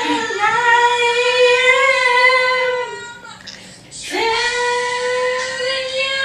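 A woman singing two long held notes, each steady in pitch, with a break of about a second between them.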